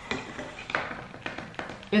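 Butter shortbread with nibbed almonds and glacé cherries being chewed, giving soft crunches and mouth noises, with a few short light taps.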